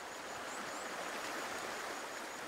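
Steady, even rush of a rocky rainforest mountain stream flowing over stones, with no frog chorus above it.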